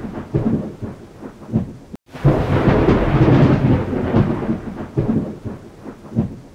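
Thunderstorm: thunder rumbling over rain, cutting out for a moment about two seconds in, then a louder long roll of thunder that slowly dies away.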